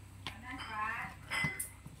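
Stainless steel bowl knocking as it is handled and lifted, with one short metallic ring about one and a half seconds in.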